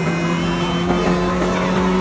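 Suzuki Jimny rally car's engine running at steady revs as it drives across sand: one even drone that holds the same pitch.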